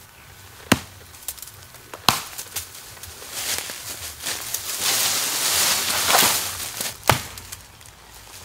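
An axe chopping into the base of a sapling: three sharp strikes, one near the start, one about two seconds in and one near the end. In between comes a long rustling and crackling of leaves and branches as the sapling is pulled over.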